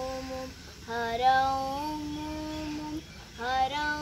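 A girl singing a Carnatic krithi to Shiva in raga Revathi, on long held notes joined by sliding ornaments. One phrase ends about half a second in; after a short breath a second phrase runs to about three seconds, then the next phrase begins.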